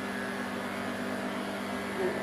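A Wahl Arco cordless pet clipper with a #40 blade runs with a steady, even hum while shaving the hair from a dog's paw pads.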